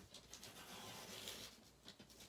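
Sliding paper trimmer's blade carriage pushed along its rail, cutting through a thin white paper bag: a faint, steady scratchy scraping of blade on paper.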